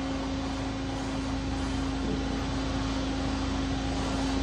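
Steady mechanical hum with a constant mid-pitched tone, from the ground hydraulic and electrical power running a parked Lockheed F-104 while its flight controls are worked.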